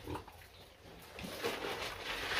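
Piglets, Landrace and Landrace × Duroc crosses, grunting faintly, starting about a second in.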